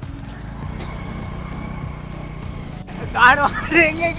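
A steady low rumble for nearly three seconds, then an abrupt cut to two men laughing and talking loudly.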